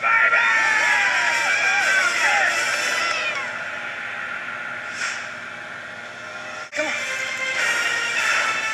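Men cheering and whooping over background music for the first few seconds, then the music continues alone, cutting out briefly near the end before it resumes.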